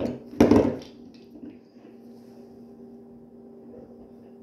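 A brief, loud clatter of a hard object being knocked or handled close to the microphone about half a second in, over a steady low hum.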